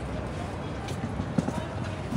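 Outdoor street noise with a steady low wind rumble, indistinct voices and a few sharp knocks about a second in.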